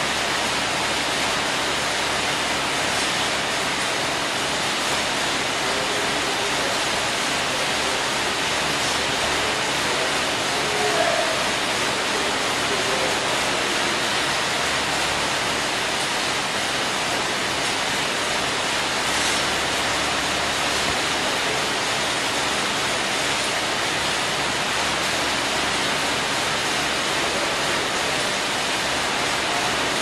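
Steady rushing noise of air-resistance fan bikes (air bikes) being pedaled, their fan wheels churning air without a break. One brief knock stands out about eleven seconds in.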